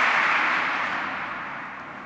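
A rush of audience noise in a hall, fading steadily away.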